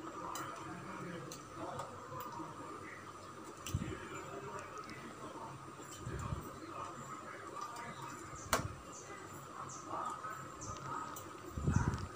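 Pongal of rice and moong dal boiling in a steel pot, a faint bubbling with scattered small pops and a sharp click a little past eight seconds in.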